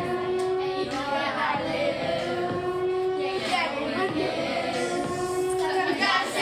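A small group of children singing a song together in unison, in phrases that each end on a long held note, three times in a row.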